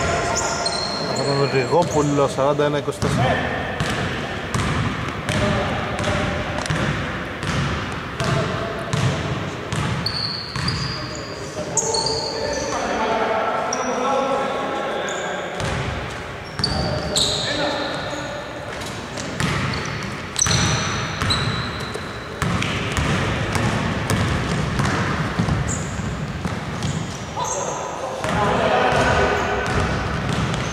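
Basketball game play on a hardwood court: the ball bouncing repeatedly, short high sneaker squeaks, and players' voices, all echoing in a large hall.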